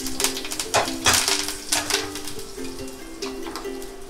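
Background music with a stepping melody, over irregular crackling and sizzling from mustard seeds, lentils and curry leaves frying in hot oil in a steel kadai.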